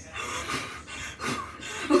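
Girls laughing in breathy bursts, with a short 'oh' right at the end.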